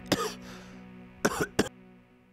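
A man coughs in short bursts, once just after the start and twice more past the middle, over a held music chord that fades away near the end.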